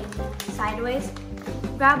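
Background music with steady held notes and a low bass, with a child's voice speaking briefly over it twice.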